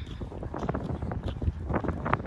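Wind buffeting the microphone in a low rumble, with irregular footsteps on a paved path.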